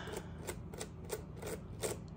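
Small screwdriver backing a tight screw out of a PowerBook 3400c's plastic bottom case: a regular run of short clicks and scrapes, about three a second, the last near the end the loudest.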